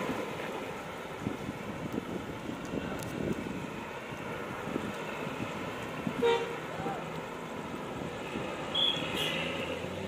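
Bus engines running in a garage yard, with one short horn toot from a departing bus about six seconds in.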